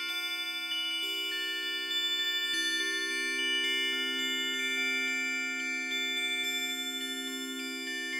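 Improvised keyboard music in a strange bell-like synthesizer sound, played from an Akai MPK Mini: steady low notes held under a stream of quick, ringing higher notes.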